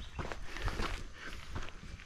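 Footsteps of a person walking on a dirt road, a few irregular footfalls.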